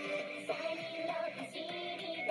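Anime opening theme: an upbeat J-pop song with female idol voices singing over the band, new notes coming in about half a second in.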